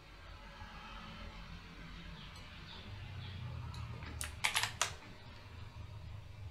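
Computer keyboard keys clicking: a quick run of about four keystrokes about four seconds in, over a faint steady room hum.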